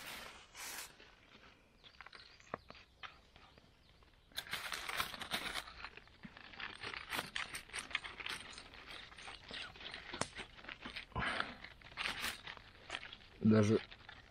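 A knife cutting into a foil-baked piece of pork ham, with the aluminium foil around it crackling and rustling in a dense run of fine clicks from about four seconds in.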